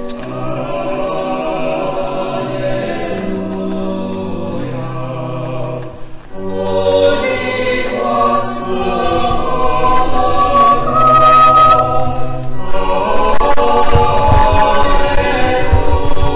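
A choir singing in harmony, with held notes that change every second or two, a short break about six seconds in, and louder singing from about ten seconds in.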